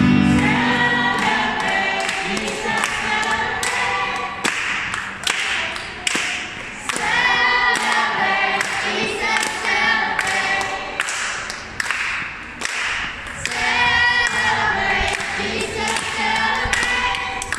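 A church choir of children and adults singing an upbeat praise chorus unaccompanied, the guitars having dropped out, with steady hand clapping on the beat.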